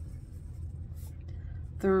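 Stylus tip rubbing and tapping on a tablet's glass screen while circles are coloured in, with a faint tap about a second in, over a steady low hum.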